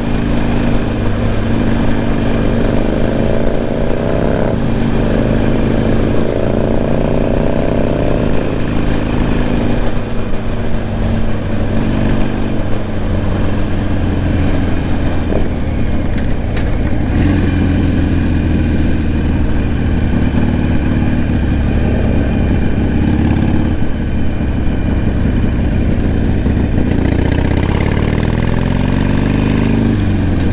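Motorcycle engine running on the move, with wind rushing past the microphone. The engine note rises as the bike accelerates a few seconds in and again near the end, with steadier running in between.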